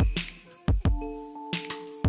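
Electronic background music with a steady beat: deep kick-drum thumps and sharp percussion hits over sustained synth chords.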